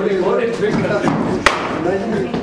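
Men talking, with one sharp knock about one and a half seconds in.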